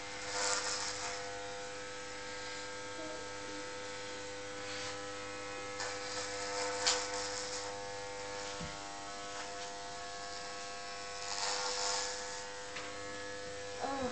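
Corded electric hair clippers running with a steady buzzing hum, with a few brief louder rasps as the blades cut through hair.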